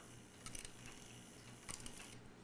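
Faint clicks from the strike mechanism of a Chelsea ship's bells clock movement as it is cycled by hand: a pair of clicks about half a second in and another pair near the end, with no bell ringing.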